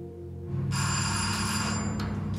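An electric doorbell ringing once for about a second, a steady high-pitched bell, over low background music.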